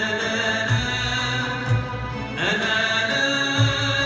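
Live Andalusian orchestra music: violins, ouds, double bass and hand drums playing together under a male voice singing long, gliding held notes. Low drum strokes fall about once a second.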